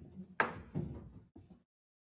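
A sharp knock about half a second in, then a few softer bumps that die away after about a second and a half. These are the knocks of a person sitting down at a table with a laptop, close to a desk microphone.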